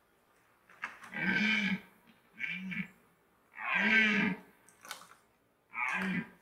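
Red deer stag roaring in the rut: four hoarse bellows, each rising and falling in pitch. The third is the longest and loudest, and the last begins near the end.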